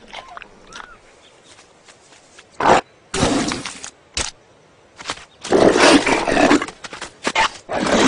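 Rough, loud big-cat growls and roars in several bursts: a short one about two and a half seconds in, then longer ones, the longest and loudest a little before six seconds.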